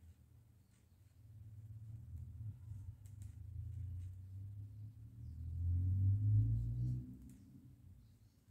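Hand knitting: a few faint clicks of the knitting needles working the yarn, over a low rumble that builds from about a second in, is loudest near the end and then fades.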